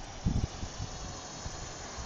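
Footsteps on a gravel path, with a low rumble from the phone's microphone; the rumble is strongest for a moment about a third of a second in.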